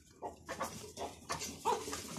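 Native chickens making a run of short calls, with a longer pitched call near the end.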